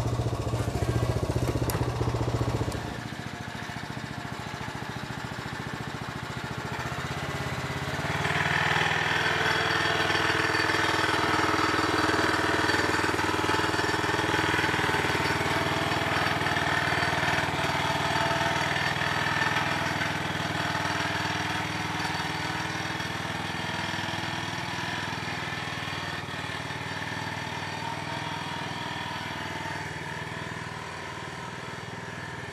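Small engine of a machine pulling a no-till seed planter, running steadily. Its low hum drops away about three seconds in, and it grows louder again around eight seconds in.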